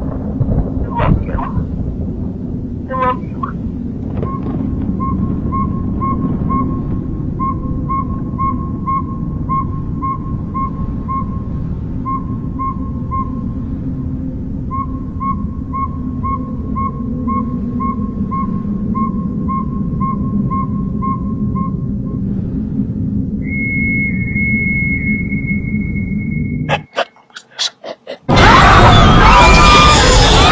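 Horror-trailer sound design: a low rumbling drone with a pulsing beep, about two or three a second, over most of it. A held high tone follows, then about a second of near silence and a sudden, very loud burst of harsh, distorted noise near the end.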